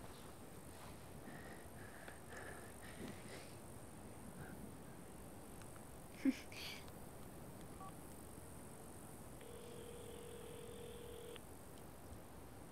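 A mobile phone's ringback tone: one steady tone lasting about two seconds, late on, as the number being called rings before it is answered.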